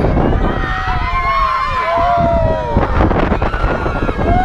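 Riders on a swinging boat ride yelling and whooping: several long cries that rise and fall in pitch and overlap, over steady wind buffeting the microphone as the boat swings.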